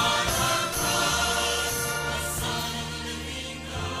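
Mixed church choir singing in harmony with instrumental accompaniment.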